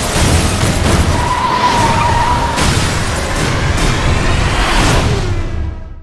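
Loud film-trailer car sound effects: a dense rush of noise with a tyre screech starting about a second in, mixed with music, fading out at the very end.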